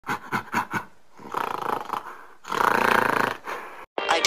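Gorilla-like animal sound effect: four quick short grunts, then a rough growl, then a longer, louder call. It stops just before the music starts.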